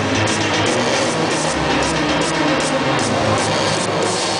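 Loud hardstyle electronic dance music played over a large hall's sound system, recorded from among the crowd, with a steady driving beat and heavy bass.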